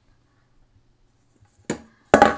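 Quiet room tone, then one sharp knock near the end as risen bread dough is tipped out of a stainless steel mixing bowl onto a floured wooden counter.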